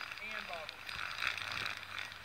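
A person's voice talking faintly in the first half, with a few small clicks from the camera being handled.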